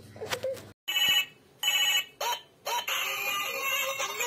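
Toy telephone's electronic ring: two short ring bursts a little under a second apart and a brief chirp, then an electronic melody starts playing about two and a half seconds in.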